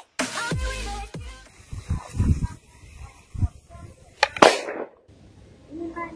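Electronic background music with falling bass drops, then, about four seconds in, a sharp double bang with a short rushing tail: a plastic bottle bursting from gas pressure built up by toilet-bowl cleaner reacting with aluminium foil.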